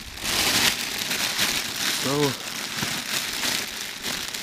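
A thin plastic bag crinkling as gloved hands handle it, an irregular crackle.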